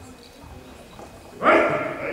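A karateka's kiai during the kata Bassai Dai: one short, sharp shout about one and a half seconds in that starts suddenly and trails off.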